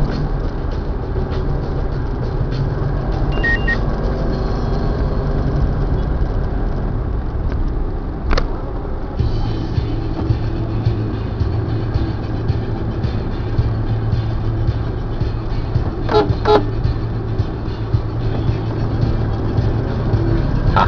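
Steady engine and road noise from inside a vehicle driving in street traffic, with the engine note changing about nine seconds in. Short horn toots from nearby traffic sound a few times, most clearly around sixteen seconds in.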